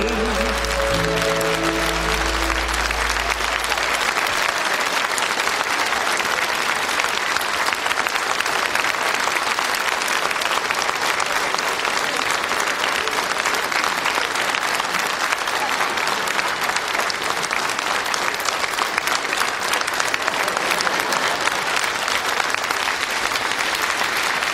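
A theatre audience applauding, a steady dense clapping that carries on throughout. The song's last held chord rings under it for the first three or four seconds and then stops.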